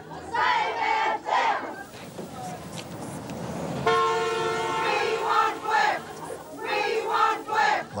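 A crowd of picketers shouting and cheering, with a vehicle horn giving one steady honk of about a second, about four seconds in, in answer to their call for support. More cheering follows.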